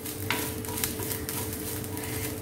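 A spatula stirring and scraping grated coconut around a small non-stick tempering pan, with the coconut sizzling as it fries in a little coconut oil. The coconut is being roasted until it turns light red.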